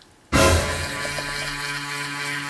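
Electric toothbrush switching on suddenly about a third of a second in, then buzzing steadily while brushing teeth.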